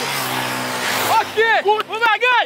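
A dual-sport motorcycle passing close by, its engine running steadily over an even noise. From about a second in, voices are heard over it.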